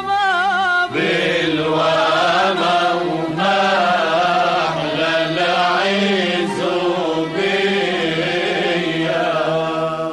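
Vocal music: a single singing voice, then about a second in a group of voices joins in a chant-like sung melody over a low held tone.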